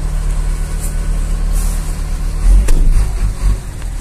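Mercedes-Benz 1620 truck's turbocharged diesel engine running, heard from inside the cab: a steady low drone that swells louder and rougher for about a second, about two and a half seconds in.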